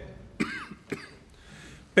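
A man coughs into his hand, twice: a sharp cough about half a second in and a shorter, fainter one about a second in.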